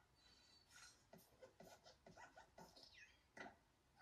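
Faint Pixar logo sound effects played through a TV speaker: the Luxo Jr. desk lamp hopping and squashing the letter I, a quick series of springy creaks, squeaks and small thuds, with a falling squeak about three seconds in.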